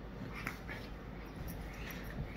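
Doberman puppies play-wrestling, with a few short high-pitched squeaks from the pups.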